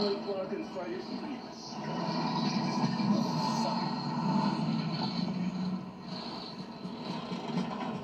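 A film soundtrack playing through a television's speaker: voices at first, then a steady, dense mix of sound for several seconds.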